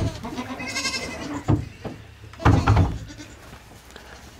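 A newborn Nigerian dwarf goat kid bleats once, a high wavering call, about a second in. A louder dull thump follows about halfway through.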